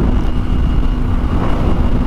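Kawasaki Ninja 250R's parallel-twin engine running at a steady speed while the motorcycle is ridden, mixed with wind noise rushing over the microphone. The engine's pitch holds level, with no revving or shifting.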